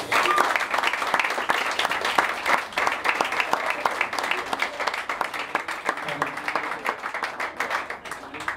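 Audience applauding at the end of a song, a dense patter of many hands clapping that thins out slowly toward the end.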